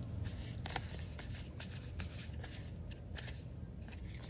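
Magic: The Gathering cards being flicked through by hand, each card slid off the front of the stack to the back: a string of irregular soft snaps and swishes, roughly two or three a second.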